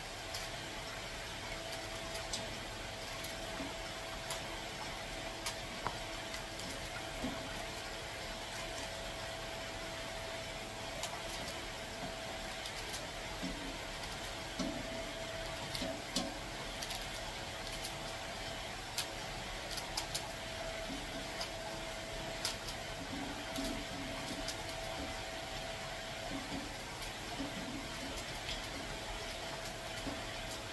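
Knife slicing through a red cabbage held in the hand, giving many short, irregular crisp cuts over a steady background hum.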